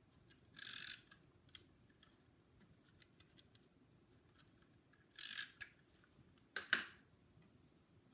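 A Snail adhesive tape runner drawn twice along the back of a ribbon, giving two short scraping strokes about a second in and about five seconds in. A couple of sharp clicks follow near the end.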